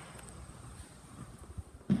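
Footsteps and phone handling noise while walking in through a doorway, with a few soft knocks and one sharp thump near the end.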